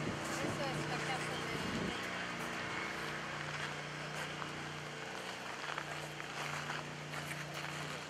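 A steady low motor hum that fades and returns, with indistinct voices talking in the first two seconds.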